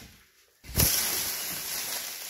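Thin clear plastic floor sheeting crinkling and rustling as it is pulled and pressed into a corner, a steady hiss that starts suddenly about three-quarters of a second in after a brief silence.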